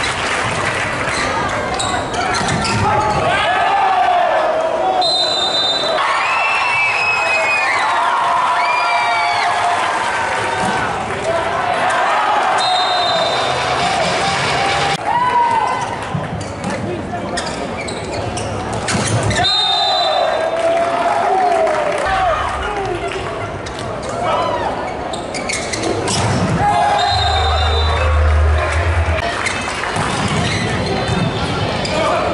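Indoor volleyball rally in a large hall: players' shoes squeak sharply on the court floor, and the ball smacks off hands in sets and spikes. Voices call out over the play.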